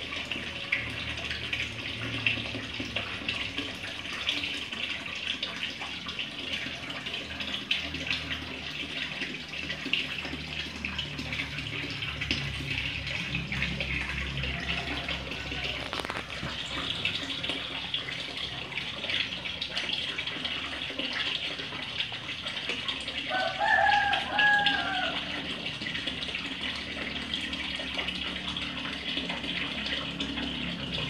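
Steady running water splashing into a garden fish pond. About four-fifths of the way through, a brief animal call with a falling pitch stands out as the loudest sound.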